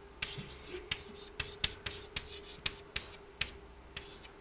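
Chalk writing on a blackboard: a string of sharp, irregular taps as the chalk strikes the board, with short scratchy strokes between them.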